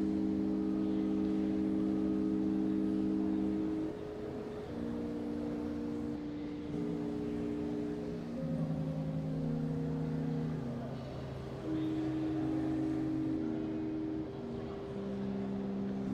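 Pipe organ playing slow sustained chords, each held a few seconds before moving to the next, as a quiet prelude.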